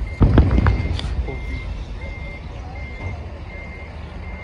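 A vehicle's reversing alarm beeping steadily, one short high beep about every three-quarters of a second, over a low engine rumble. A few loud sharp crackles come in a cluster just after the start.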